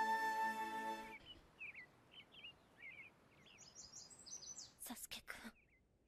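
A sustained music chord from the anime soundtrack cuts off about a second in. Faint birds chirping follow, then a run of higher chirps and three short bursts of noise.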